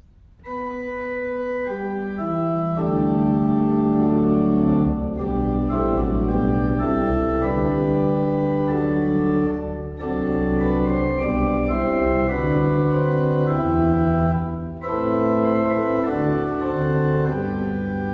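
Two-manual church organ played on manuals and pedals: a hymn introduction in sustained chords, starting about half a second in and moving in phrases with short breaks about every five seconds.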